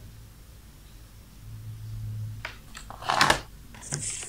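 Faint steady low hum, then a short burst of rustling and knocking about three seconds in: handling noise from work at the bench.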